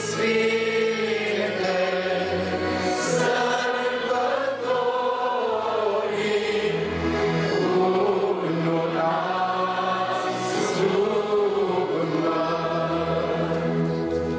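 A choir singing a slow religious hymn in long, held notes, the melody rising and falling smoothly.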